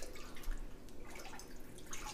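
Metal spoon stirring milk in a large stainless steel pot, with soft, irregular sloshing and dripping as diluted rennet is mixed into the milk for cheese.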